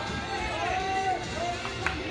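Baseball players calling and shouting across the field during infield practice, with one short, sharp crack near the end.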